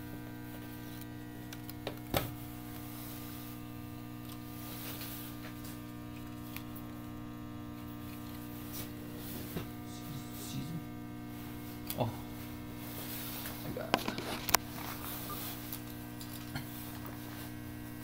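Steady electrical mains hum, with a few light clicks and rustles as telephone wires are handled on a punch-down patch panel.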